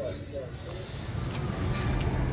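Faint voices in the distance over a steady low rumble of outdoor background noise, which grows slightly louder near the end.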